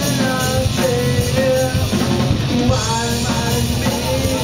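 A live rock band playing: electric guitar, bass and drum kit, with a singer holding sung notes in short phrases over the band.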